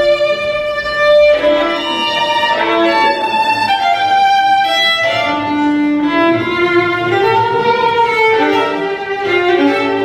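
Unaccompanied violin played with the bow: a melody of held notes, changing pitch every half second to a second.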